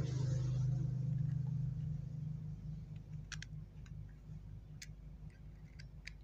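Light, separate metal clicks from a coiled copper-wire soldering tip and a soldering iron's metal barrel being handled and fitted together by hand. Under them is a low steady hum that fades out in the first couple of seconds.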